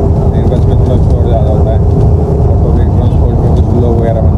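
Bus engine and running gear heard from inside the passenger cabin: a loud, steady low rumble, with a steady hum over it that stops about two-thirds of the way through.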